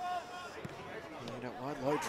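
Field sound of a football match: a short shout at the start, then a single thud of the ball being kicked about two-thirds of a second in. A man's voice comes in near the end.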